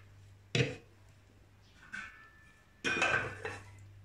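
Kitchenware being handled on a counter as a measuring jug of brine is set down by a glass pickling jar: one sharp knock about half a second in, a light tap near the middle, and a longer ringing clink near the end, over a steady low hum.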